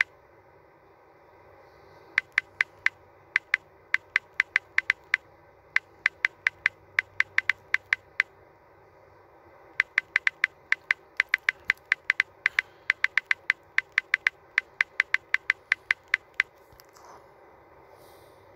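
A phone's on-screen keyboard clicking with each key press as a search is typed: quick, even clicks, several a second, in two runs with a short pause near the middle.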